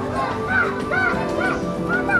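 Background music over young children's excited voices: a run of short, high, arching calls about twice a second.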